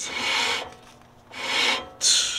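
Worn stock front brake rotor of a 9th-gen Honda Civic Si, spun by hand, scraping against its pads in two raspy swells about a second apart. The pads and rotor are worn out, to the point of having no braking left.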